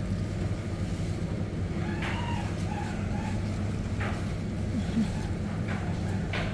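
Steady low hum of supermarket background noise, the kind given off by refrigerated produce cases and ventilation, with faint distant voices now and then.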